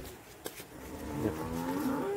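A cow mooing: one long, low call that begins about a second in and grows louder toward the end.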